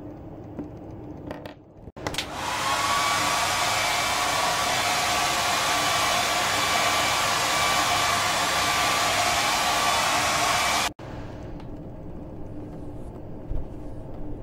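Hair dryer running steadily, starting with a click about two seconds in and cutting off abruptly some nine seconds later.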